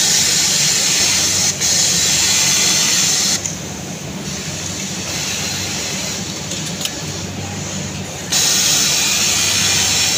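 A loud, even hiss that runs for about the first three seconds, stops, and comes back about eight seconds in. Under it, the steady low hum of an idling industrial sewing machine motor.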